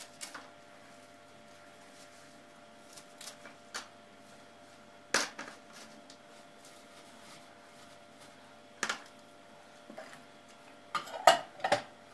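Scattered clicks and knocks of kitchen handling, a knife cutting radish greens on a plastic tray and the knife being set down, over a faint steady hum. Near the end, louder clinks of the stainless steel pot and its lid.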